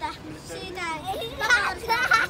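A young boy's voice performing, joined near the end by a young girl laughing.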